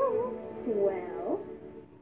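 Recorded song played from a CD player: music with a voice sliding up and down in pitch, dropping to a brief lull near the end.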